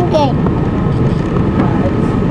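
Steady drone of a passenger ferry under way, its engines and the water rushing past the hull heard on board. A voice trails off just as it begins.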